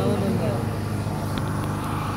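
The last sung note of a naat dying away, leaving a steady low hum from the public-address sound system, with a few faint clicks.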